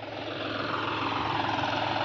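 Tractor engine running steadily at low revs while driving a PTO water pump, a low even hum that grows gradually louder.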